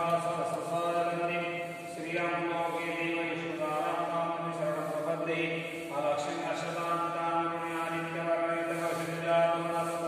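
Sanskrit mantras being chanted in a steady, sustained recitation, with new phrases starting about two and six seconds in.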